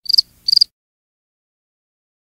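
Two short, high-pitched chirps about half a second apart, a sound effect in a channel logo intro.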